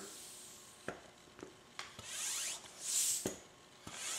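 High-pressure airgun hand pump being worked, pumping air into an air-over-hydraulic multiplier cylinder: breathy hisses of air with the pump strokes, two of them about a second apart in the second half, with a few light clicks between.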